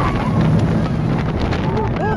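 Mine Train roller coaster running down its track: a loud rush of wind on the microphone over the rattle and rumble of the cars. A rider's long, high scream trails off just after the start, and short cries come near the end.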